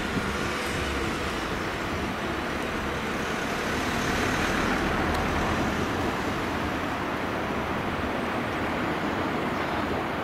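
Steady rushing noise of motorway traffic crossing the bridge overhead, mixed with river water running over a small weir, swelling a little about halfway through.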